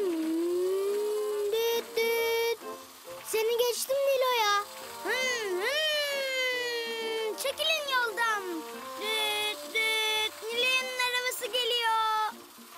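Children's voices making wordless toy-car engine noises: long hums that swoop up and fall away in pitch, some held on a steady note, as toy cars are pushed along a sand track, with light music behind.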